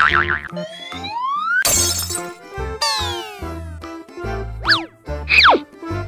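Background music with a steady bass beat, overlaid with comic sound effects: a long rising whistle glide, a short crash, then falling whistle glides and a couple of quick swooping whistles near the end.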